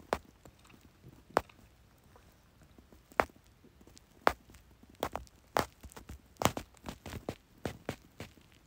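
Irregular light clicks and taps, about ten of them, coming closer together in the second half.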